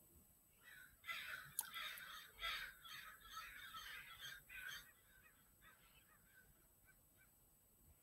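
A flock of crows cawing faintly: a string of short calls over about four seconds, thinning out and stopping past the middle.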